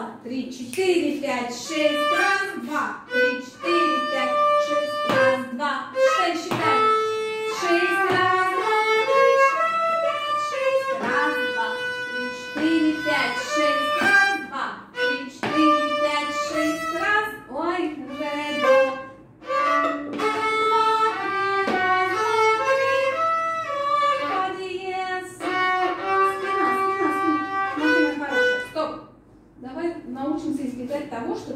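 Violin playing a quick passage of many short bowed notes in a steady rhythm, breaking off near the end.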